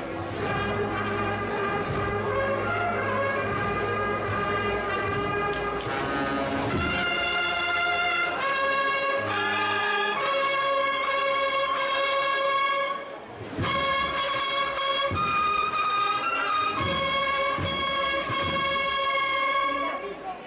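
A Holy Week cornet and drum band (banda de cornetas y tambores) playing a march, its cornets holding long loud chords, with a brief break about thirteen seconds in.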